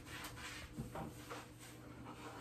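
A few faint, soft rubbing strokes of a sponge wiping tile sealer onto ceramic wall tile.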